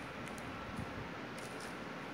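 Quiet room hiss with a few faint crinkles from clear plastic comic-book bags being handled.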